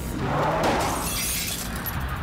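Glass shattering as the rear window of an SUV breaks under an unsecured load inside it. It is a single loud crash of breaking glass that dies away over about a second and a half.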